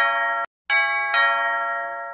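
A two-note ding-dong chime, like an electronic doorbell, with a higher note followed by a lower one that rings on and fades. The previous chime is cut off shortly after the start, and a fresh ding-dong begins less than a second in.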